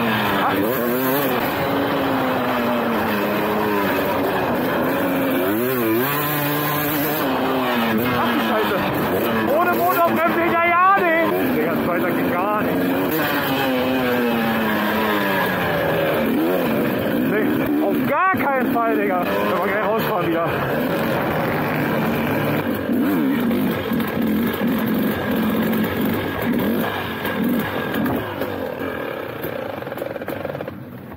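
KTM 250 SX two-stroke motocross bike being ridden hard, its engine revving up and down through the gears with sharp rev bursts around ten and eighteen seconds in. Near the end the engine drops back and the sound becomes choppy as the bike slows.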